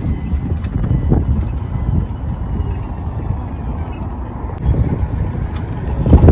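Street noise: a continuous, uneven low rumble of traffic and wind on the microphone.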